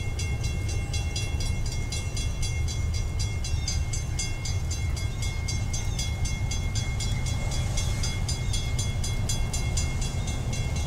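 Railroad grade-crossing bell ringing in rapid, evenly spaced strokes as the crossing warning activates for an approaching train, over a steady low rumble.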